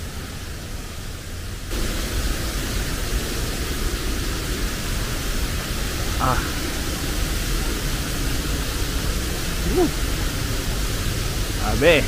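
Steady rushing noise of a waterfall and river in high water, stepping louder about two seconds in, with a few short vocal sounds from the climbing hiker.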